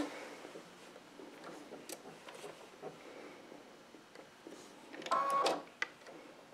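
Electric sewing machine stitching in one short burst of about half a second near the end, after a few seconds of faint fabric handling.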